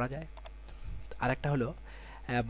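Brief fragments of a man's speech, with a quick double click from the computer being operated a fraction of a second in.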